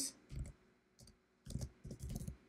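Typing on a computer keyboard: a few short, uneven bursts of key taps as a word is entered.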